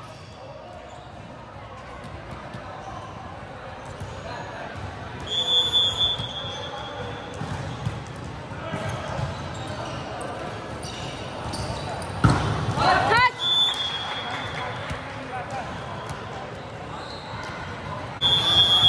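Indoor volleyball rally in a large, echoing sports hall. A referee's whistle blows about five seconds in, then comes a series of ball hits and players' voices. A loud hit about twelve seconds in is followed by shouting, and the whistle blows again about a second later.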